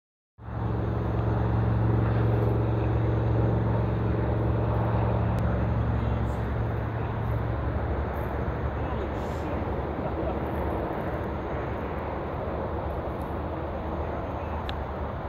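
Steady drone of an engine with a low hum that fades away about halfway through, over a constant rushing background.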